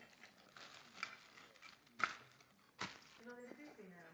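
Rustling and handling noises with a few sharp knocks, the loudest about two seconds in, from a toy baby doll and its plastic and cloth things being handled; a short burst of voice near the end.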